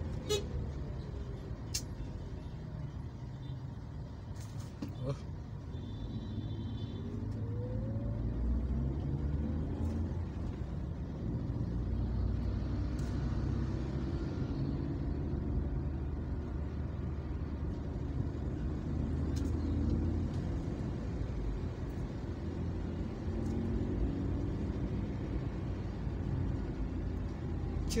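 Steady low rumble of engines and tyres in slow, heavy road traffic, with a cargo truck close by.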